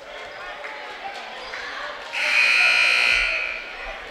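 Gym scoreboard horn sounding one long buzz of a little over a second, about two seconds in, signalling the end of the break before the fourth quarter. Crowd chatter in the gym carries on underneath.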